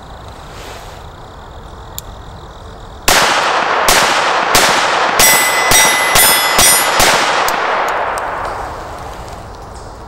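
Beretta 21A .22 pistol fired one-handed with CCI Stinger rounds: eight sharp shots in about four seconds, starting about three seconds in, the first double-action shot followed by a slightly longer pause before the quicker single-action shots. Through the middle of the string a steel target rings from hits, four hits out of eight, and the shots echo briefly after the last one.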